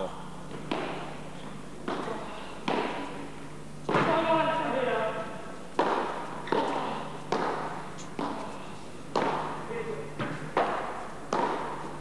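Padel rally: a dozen or so sharp knocks, irregular but about one a second, as the ball is struck by the paddles and bounces on the court. A voice calls out briefly about four seconds in.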